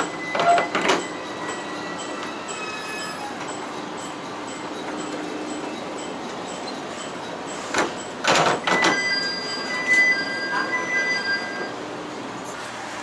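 Diesel railcar rolling slowly over jointed track, with two bursts of sharp clanks as the wheels cross points, one near the start and one about eight seconds in. High wheel and brake squeal follows each burst as the railcar slows into a station.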